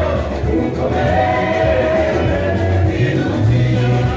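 Live gospel music: a group of singers sing together in harmony over a band with keyboard, guitar and drums.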